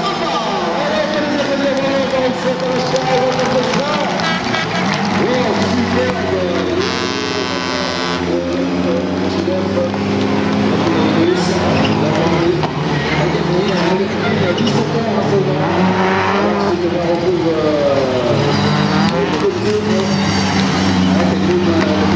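Touring autocross race cars' engines running hard on a dirt track, several engine notes rising and falling as the cars rev, shift and pass, with a strong high-revving stretch about seven seconds in. A voice talks over the engines.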